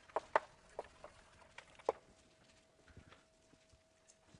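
Chalk tapping and scraping on a blackboard as a heading is written: irregular sharp clicks, thinning out after about two seconds. A faint steady hum runs underneath.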